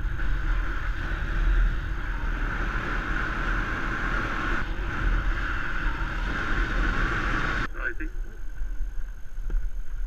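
Wind rushing over the microphone of a camera on a moving motorbike, with the engine's low rumble underneath. About three-quarters of the way through, the wind noise drops away suddenly as the bike slows.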